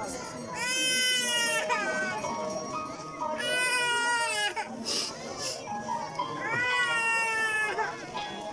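A young child crying: three loud, wavering wails, each about a second long, with short gaps between them.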